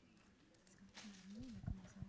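Faint voices talking off-microphone in a large hall, with a few small clicks.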